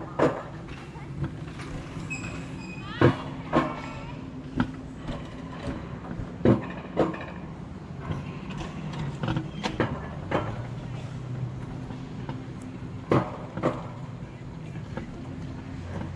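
Alpine coaster sled running along its steel rails: a steady low rumble with sharp clacks at irregular intervals, a second or a few seconds apart.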